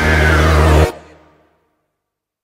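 Edited soundtrack: a steady, low sustained musical tone from a music track, cut off sharply a little under a second in and followed by dead silence.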